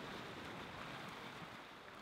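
Faint ocean surf: small waves washing over a rock ledge in a steady hiss, easing slightly toward the end.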